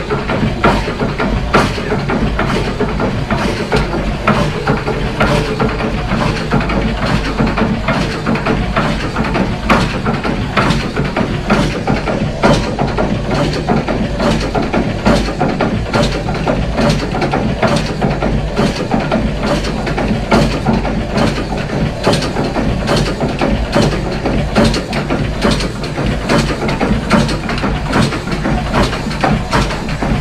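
Steam winch engine running steadily, with a regular beat of sharp strokes, about two a second, over a continuous mechanical clatter.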